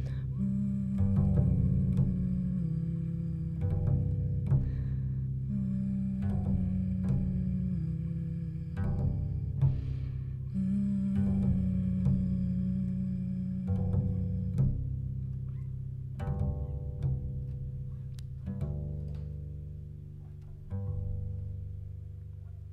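Upright double bass played solo and plucked with the fingers, low notes struck one after another and left to ring. The playing grows quieter toward the end.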